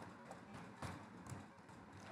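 Faint computer keyboard keystrokes: a few light, scattered clicks as a word is typed.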